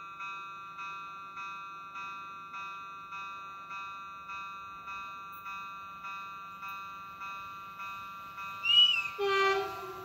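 Level-crossing warning bell ringing with a steady electronic ding, nearly two strokes a second, signalling that a train is on its way. Near the end, the approaching Renfe commuter train sounds its horn, a short high blast and then a longer, lower one, the loudest sound here.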